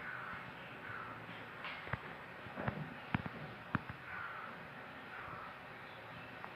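Thick homemade liquid soap poured slowly from a mixer jar into a plastic hand-wash bottle: a quiet pour, with a few light clicks and taps in the middle as the jar's rim touches the bottle neck.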